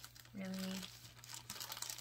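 A woman's drawn-out "really", then about a second of light crinkling, as of the box's paper or plastic wrapping being handled.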